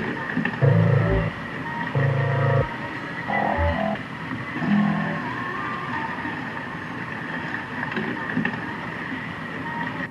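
Experimental electronic noise music: a few short, blocky synthesized tones in the first half over a steady noisy drone with a thin high tone, which cuts off abruptly at the end.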